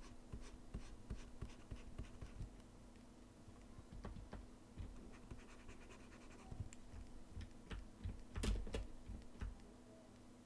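Faint scratching and tapping of a pen stylus on a graphics tablet, with scattered clicks of computer input and a steady low hum underneath. The loudest knock comes about eight and a half seconds in.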